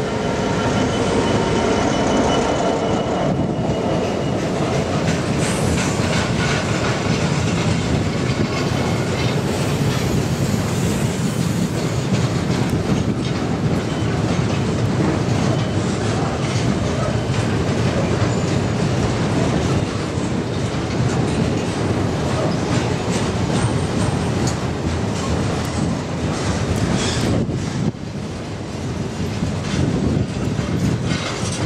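A Class 66 diesel locomotive, with its EMD two-stroke engine, passes close by hauling a freight train; its engine note is heard in the first few seconds. A long rake of bogie box wagons then rolls past with a steady rumble and clatter of wheels on rail.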